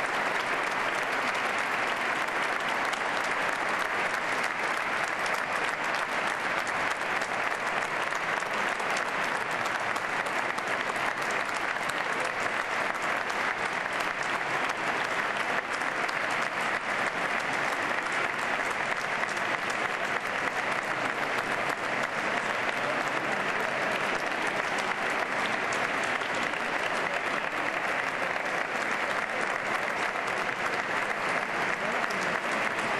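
Audience applauding steadily, a continuous ovation of many hands clapping at an even level throughout.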